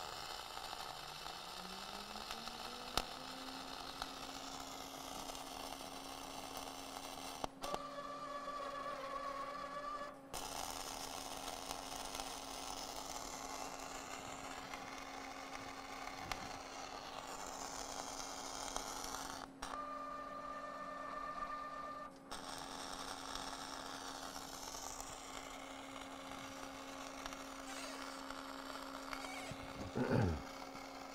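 K-BUG 1200 welding tractor's gear-drive motor winding up in pitch over the first few seconds, then running at a steady pitch under the hiss of a wire-feed welding arc. The arc sound breaks off twice for a few seconds and resumes as the machine lays stitch welds.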